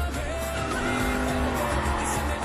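A car engine revving, held at high revs, laid over a pop song's backing music.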